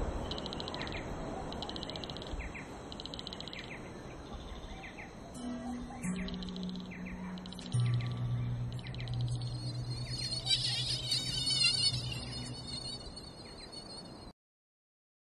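Night-time insect ambience of regular chirps, about one every 0.8 s, with small bird-like chirps. Low sustained music notes enter one after another from about five seconds in, the deepest and loudest from about eight seconds. A brief warbling burst of higher chirping comes near the end.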